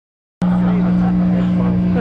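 Overdriven electric guitar, played through a Marshall stack, holding one sustained chord that rings steadily at a loud level. It starts abruptly about half a second in.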